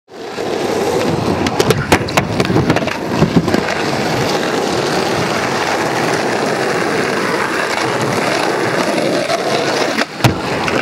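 Skateboard wheels rolling on asphalt, a steady rumble, with a few sharp clacks from the board in the first few seconds.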